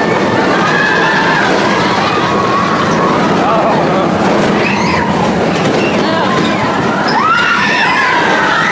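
Big Thunder Mountain Railroad mine-train roller coaster running along its track with a loud, steady rumble, heard from a seat on board. Riders' voices carry over it, with rising shouts about seven seconds in.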